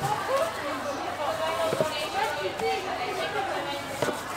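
People chattering in the background, with a single sharp knock of a kitchen knife against a cutting board just before the halfway point as rind is sliced off a watermelon.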